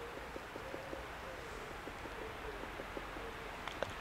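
Faint, irregular tapping coming from up in the trees, a scatter of small ticks with a couple of sharper clicks near the end. Its source is unidentified; it is not people.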